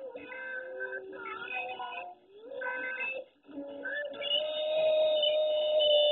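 Music with singing: a short sung tune in several phrases that ends on one long held note, starting about three and a half seconds in.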